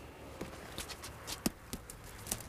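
A few irregular footsteps and small knocks, with one sharper knock about one and a half seconds in.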